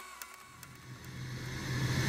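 A quiet break in an electronic music track: a low, steady synth drone with a rising hiss swells louder and louder, building up into the next section.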